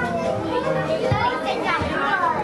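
Many children's voices chattering and calling out over one another, with some adult speech mixed in.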